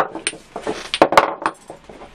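Small glass paint jars and a plastic thinner bottle being set down and moved on a tabletop: a sharp click at the start, then several light knocks and clinks.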